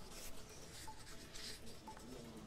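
A faint background music bed under the news footage, quiet, with a few soft scattered notes.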